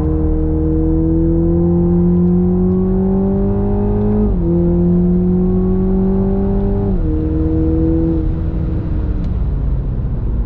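The 2.0-litre turbocharged four-cylinder engine of a MK5 Toyota GR Supra pulling hard on track, heard from inside the car. Its pitch climbs, drops at an upshift about four seconds in, climbs again and drops at a second shift about seven seconds in. The engine note then falls away about eight seconds in, leaving tyre and road noise.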